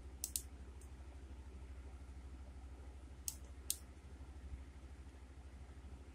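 Computer mouse clicks in two quick pairs, one just after the start and one about three seconds in, over a low steady hum.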